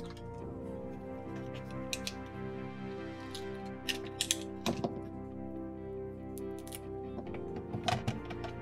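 Background music plays throughout, with a few sharp clicks scattered through it as a banana's stem end is cut with a utility knife and the banana is handled. There is a cluster of three clicks about four seconds in, and one more near the end.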